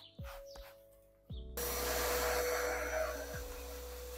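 A few short scraping strokes of a stiff hair-removal brush on a carpeted car floor mat. About one and a half seconds in, a vacuum cleaner switches on and runs steadily, louder than anything before it.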